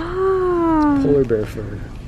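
Baby's long drawn-out vocal coo, one held note gliding slowly lower for about a second, followed by a few short syllables.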